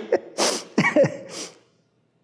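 A man laughing: three breathy bursts of laughter with short falling voiced sounds between them, dying away after about a second and a half.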